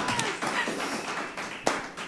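A few people clapping lightly right after a song ends, with a faint voice at the start and one sharper tap near the end.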